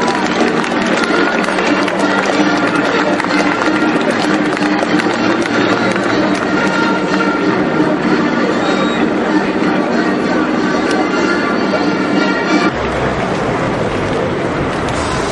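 Music played over a stadium's loudspeakers during the pre-match line-up, mixed with crowd noise; the sound changes abruptly near the end.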